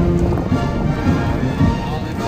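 Norwegian military band playing outdoors in a parade, several held notes sounding together over a steady low clatter.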